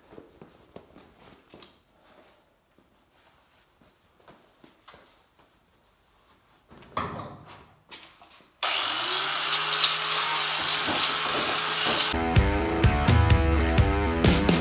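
Quiet handling clicks and footsteps, then about two-thirds of the way through a hand-held disc grinder fitted with a wire wheel switches on. Its motor spins up with a rising whine and settles into a loud, steady run as the wire wheel strips rust off a steel radiator cradle to bare metal. Rock music comes in over the grinding near the end.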